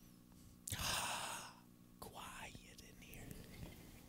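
A man whispering close to a headset microphone: a loud breathy sound about a second in, then quieter whispered sounds, over a steady low hum.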